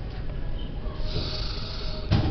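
Paper pages of a book being flipped, with a rustling hiss about a second in, over a low rumble of handling noise.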